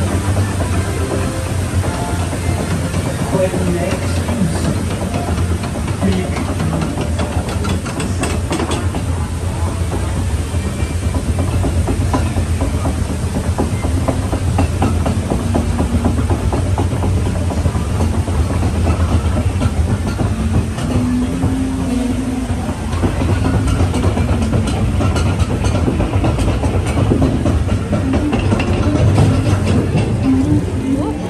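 Boat lift of a dark-ride flume hauling a boat up its incline: a steady low mechanical hum with dense, rapid clattering from the lift.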